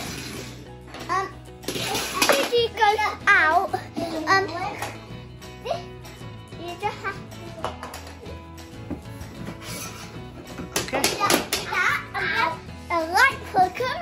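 A young girl's voice, heard on and off over background music with a steady low bass line.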